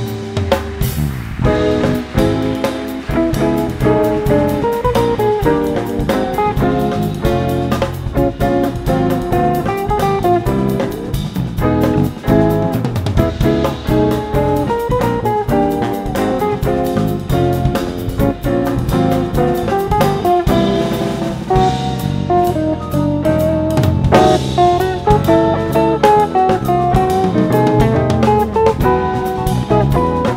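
Live jazz band playing a pseudo-bulería arrangement. A hollow-body electric jazz guitar plays a busy melodic line to the fore over drum kit, electric bass and keyboards.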